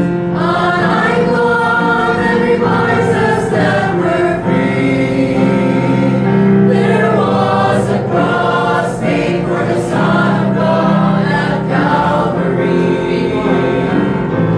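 Mixed church choir of men's and women's voices singing a gospel hymn, with long held notes.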